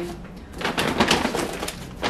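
Paper and plastic grocery bags rustling and crinkling as groceries are pulled out of them, in a quick run of crackles.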